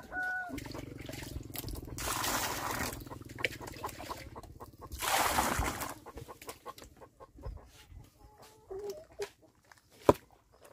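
Water poured into a sand-and-cement mound to mix mortar, splashing in two bursts, with a low steady hum beneath it during the first half. A chicken clucks at the start and again near the end.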